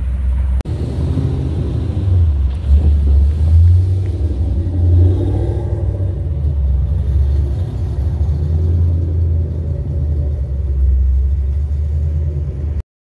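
2005 Ford Mustang GT's 4.6-litre V8 rumbling deeply through its exhaust as the car pulls away, getting louder and uneven under throttle about three to five seconds in.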